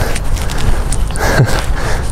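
Steady rushing rumble of wind on the microphone of a handheld camera outdoors, with a brief laugh near the end.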